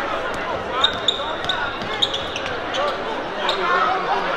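Basketball bouncing on a hardwood gym floor, a few sharp bounces, over steady crowd chatter in the gym, with a brief high squeak about a second in.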